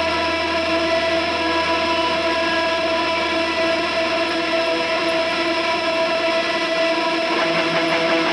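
Electric guitars holding a steady, sustained droning chord through effects. Rhythmic strumming comes in near the end.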